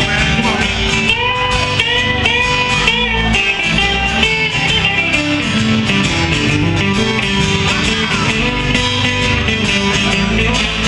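Country-rock band playing an instrumental break with no singing. An electric guitar plays a lead with bent notes over a strummed acoustic guitar and an electric bass. The bends are clearest in the first three seconds.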